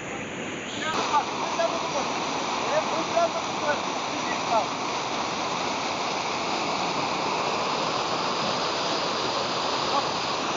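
Whitewater of a canyon stream rushing steadily down a rock chute, growing louder about a second in. Several brief shouts are heard over it in the first few seconds.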